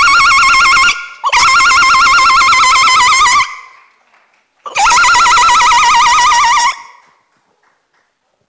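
Woman ululating: a loud, high, rapidly warbling trill in three long calls of about two seconds each, with short breaks between them, stopping about seven seconds in.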